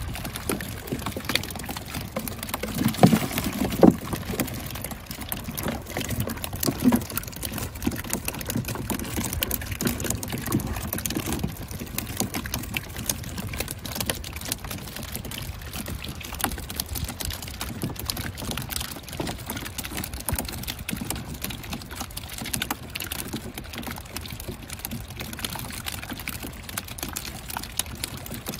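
Shallow water sloshing and pouring as a man wades and moves a tub through a net fish trap, over a dense, irregular patter of small clicks. A few louder low knocks come about three to four seconds in.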